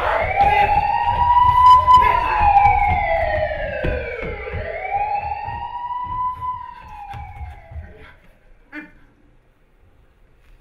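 A wailing police siren sound effect played over the theatre's sound system, its pitch rising and falling slowly about every four seconds over a low rumble, and fading away a little before the end. A single short click sounds near the end.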